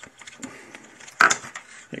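Small plastic e-bike display parts handled on a wooden tabletop: light clicks and rustles, then one sharp clack a little over a second in as a piece is picked up or set down.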